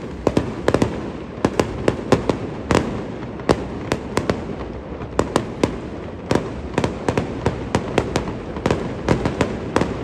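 Fireworks going off continuously: sharp cracks at an irregular pace, several a second, over a steady rushing noise.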